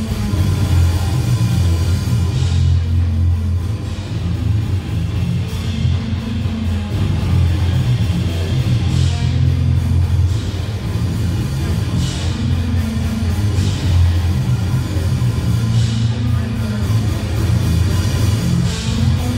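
Death metal band playing live: guitars and a drum kit, loud throughout.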